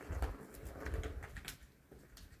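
A cat batting the ball around a plastic circular track toy: the ball rolls in two low rumbling runs, one at the start and one about a second in, with light clicks as it is struck.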